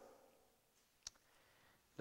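Near silence: room tone, with one short click about a second in.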